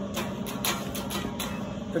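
Acoustic guitar strummed in a steady rhythm, about three strums a second, between sung lines of a song; a male voice comes back in right at the end.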